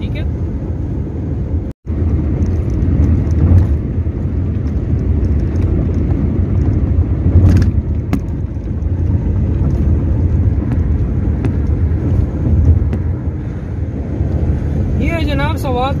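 Car driving at motorway speed, heard from inside the cabin: a steady low rumble of road and engine noise.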